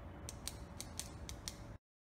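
Short logo-intro sound effect: a run of about six sharp mechanical clicks, roughly four a second, over a low noisy bed with a faint steady tone. It cuts off suddenly near the end.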